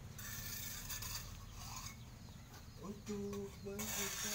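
A man singing a few held notes, starting about three seconds in, after a second or so of rustling noise.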